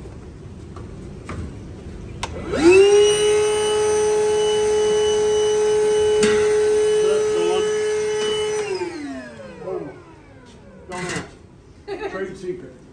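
Shop vacuum's motor switched on, spinning up within a moment to a steady high whine. After about six seconds it is switched off and winds down, its pitch falling away.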